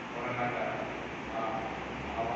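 A man talking into a microphone, a public-address voice in short phrases.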